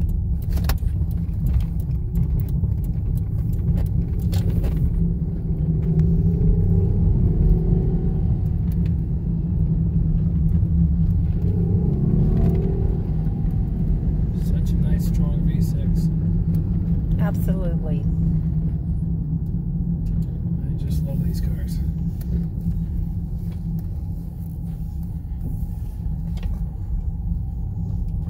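Steady low rumble of engine and tyre noise inside the cabin of a Toyota Camry as it drives along a gravel road.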